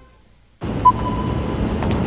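Near silence, then about half a second in a steady rushing noise from a commercial's soundtrack starts abruptly, with a short high tone about a second in.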